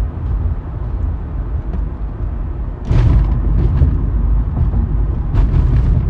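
Steady low rumbling background noise with no speech, growing louder and hissier about three seconds in.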